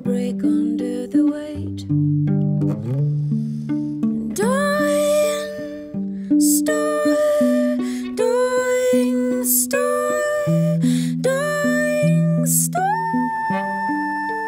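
Hollow-body electric guitar picking a slow figure of single notes. From about four seconds in, a wordless singing voice joins it, sliding up into long held notes several times: a vocal imitation of what a dying star sounds like.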